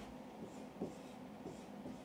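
Dry-erase marker writing on a whiteboard: a few short, faint strokes as the letters are drawn.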